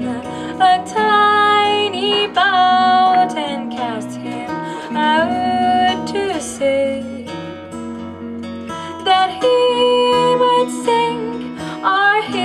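Live folk-pop performance: a woman sings a slow ballad melody with long held and sliding notes, accompanied by acoustic and electric guitar.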